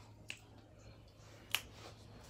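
Two short, sharp clicks about a second and a quarter apart, the second louder, over faint room tone.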